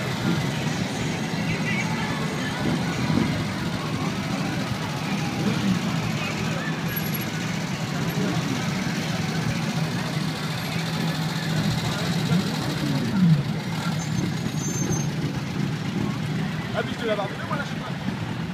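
Motorcycles and motor trikes rolling past slowly one after another, their engines running steadily at low revs, with crowd chatter. One engine revs up briefly and louder about two-thirds of the way through.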